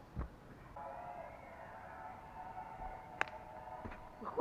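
A person landing hard on the ground from a flip: one dull thud just after the start. Under it, from about a second in, a steady cluster of several held tones goes on for about three seconds, with a sharp click near the end.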